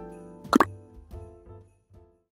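A light background jingle with a short, quick double 'plop' sound effect about half a second in, the loudest moment. The music then fades out near the end.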